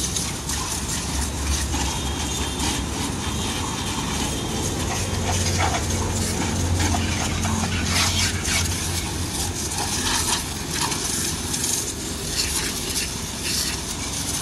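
Water jet from a pressure-washer spray gun hissing as it sprays onto a motorcycle's bodywork and wheels, with spatters as the stream moves over the surfaces. A low hum runs underneath and swells for a few seconds in the middle.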